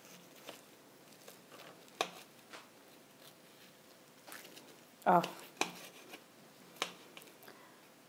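Kitchen knife cutting through the crisp, flaky puff-pastry crust of a baked brie: quiet crackling with a few sharp clicks spread through the cut.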